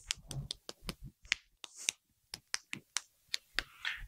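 A quick, irregular run of light clicks and taps, several a second with short pauses.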